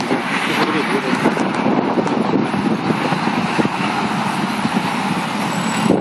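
Busy city street ambience: a steady wash of traffic noise with people talking nearby.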